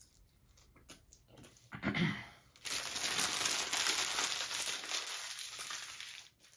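Paper food wrapper crinkling loudly as it is crumpled up by hand, a dense crackling rustle lasting about three seconds that starts a little over halfway through.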